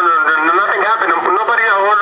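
Speech only: a man's voice talking in a played-back prank-call recording.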